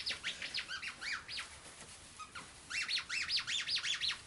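Squeaker inside a densely stuffed plush acorn dog toy being squeezed over and over. It gives two quick runs of high squeaks, each squeak rising and falling in pitch, with a pause of about a second and a half between the runs.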